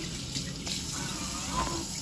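Tap water running steadily into a stainless steel sink, with gloved hands being washed under the stream.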